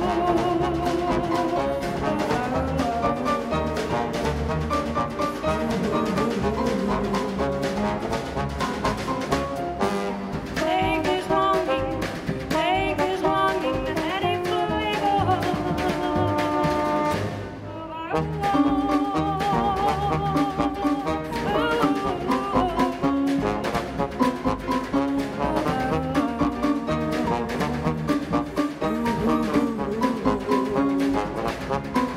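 Live jazz band playing an instrumental passage, brass section over drums, double bass and ukulele. The band drops out briefly about two-thirds of the way through, then comes back in.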